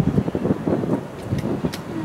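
Wind gusting on the microphone, with a few short clicks about a second and a half in.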